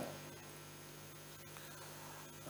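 Faint steady electrical hum with a low hiss: mains hum and background noise of the recording.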